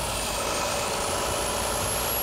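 Volvo semi-truck with a D13 engine cruising at highway speed: a steady, even mix of tyre and engine noise.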